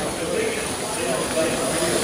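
Indistinct chatter of several people in the background over a steady hiss.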